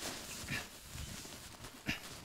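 Chalkboard eraser rubbing across a blackboard in wiping strokes, with a short knock near the end.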